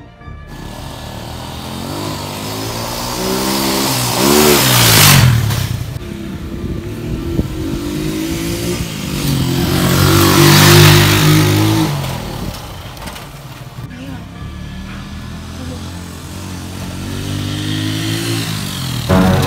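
Small motorcycle engine revving and riding on a dirt track. Its pitch rises and falls, and it is loudest twice as it comes close, about five seconds in and again about eleven seconds in.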